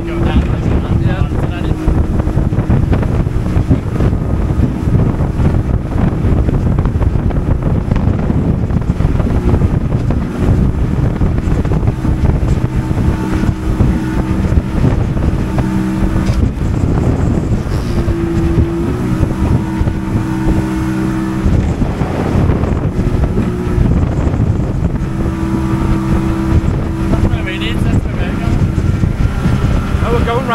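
Small motorboat's engine running steadily under way across choppy water, with wind rushing over the microphone. A steady hum rises and falls in strength over the continuous rumble.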